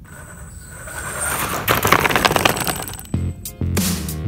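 A noisy swell full of dense crackling that builds for about three seconds, then cuts into electronic background music with a bass-heavy beat.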